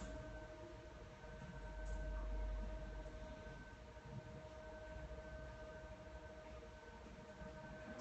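Quiet room tone: a faint steady hum of a few high tones, with a low rumble that swells about two seconds in.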